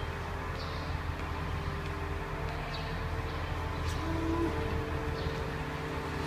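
A large bus's diesel engine idling close by with a steady low rumble.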